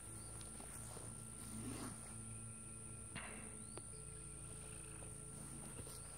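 Quiet outdoor ambience with a steady high-pitched insect drone, a faint rustle a little before two seconds in and a soft click about a second later.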